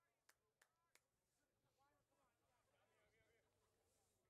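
Near silence: faint, distant voices, with three short sharp clicks in the first second.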